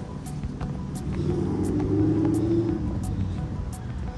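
A motor vehicle passing, its low engine and road noise swelling from about a second in and fading toward the end, with footsteps on the wooden planks of a footbridge.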